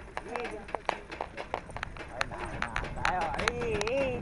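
Hooves of small ponies pulling sulky carts at a trot on a dirt track: a quick, irregular clip-clop of sharp hoof strikes over a low rumble of the moving carts.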